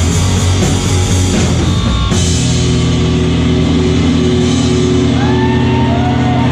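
Live rock band with distorted electric guitars, bass and drum kit playing loud. About two seconds in they hit a chord with a crash that is left ringing as steady held tones, with gliding high tones appearing near the end.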